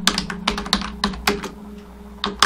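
Computer keyboard keystrokes typing a single word, about six quick key clicks in the first second and a half, then a pause, over a steady low hum.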